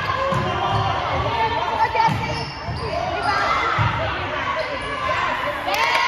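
Basketball bouncing on a hardwood gym floor, several thuds at uneven intervals, over voices echoing in the hall.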